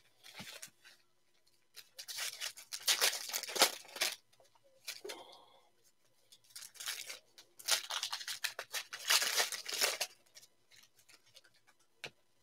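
Foil trading-card pack wrappers being torn open and crinkled by hand, in several separate bursts of ripping.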